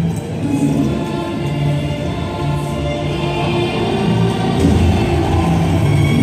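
A marching band ensemble holding slow, sustained chords in a choir-like, chorale-style passage, the chord changing about once a second.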